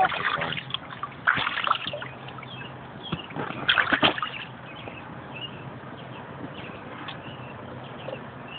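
Pool water splashing and sloshing around an inflatable baby float, with two louder bursts of splashing, about a second and a half in and around four seconds in, over a faint steady low hum.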